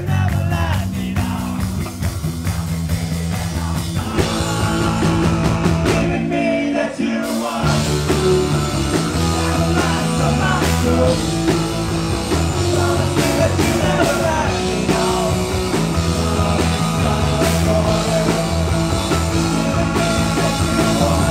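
Live rock band playing: electric guitars, bass and drums with singing. The bass and cymbals drop out for about a second around six seconds in, then the full band comes back in.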